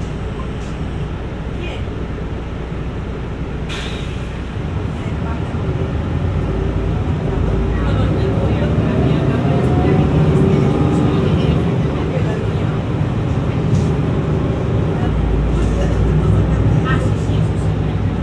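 Cabin sound of a Mercedes-Benz city bus pulling away from a stop: a low engine hum while standing, a brief hiss about four seconds in, then the engine growing louder with a rising whine as the bus accelerates.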